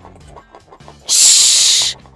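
A woman's long, loud "shhh" hush, starting about a second in and lasting most of a second, over faint background music.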